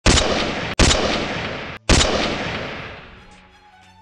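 Intro sound effects: three heavy cinematic impact hits within the first two seconds, each with a long fading tail, the last dying away near the end under faint held tones.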